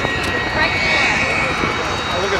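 Turbine engine noise from the show's jet car and helicopter: a steady roar with a high whine.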